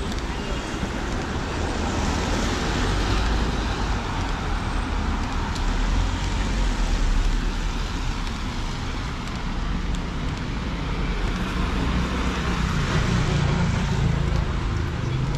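Street traffic: a steady rumble of road noise with cars passing, swelling twice, about three and seven seconds in.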